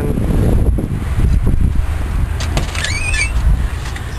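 Steady low rumble inside a tour van, with a brief high, wavering squeak about three seconds in.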